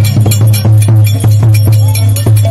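Loud, fast traditional drumming on a Santali kettle drum (tamak) and barrel drum (tumdak), a quick run of sharp strikes over a steady low boom, with bright metallic ringing among the strokes.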